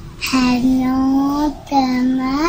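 A young boy singing alone without accompaniment: one long note held at a steady pitch for about a second, then a short break and a second long note beginning near the end.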